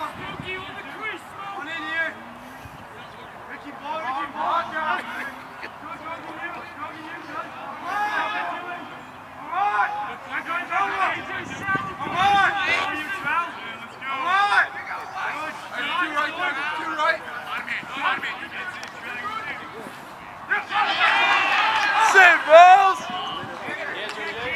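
Voices shouting across a lacrosse field during play, calls coming in short bursts, with a louder stretch of yelling about 21 seconds in.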